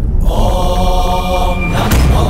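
Dramatic background score: a held, chant-like vocal over a deep low rumble.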